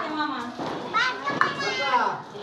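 Children's voices talking and calling out in high pitches.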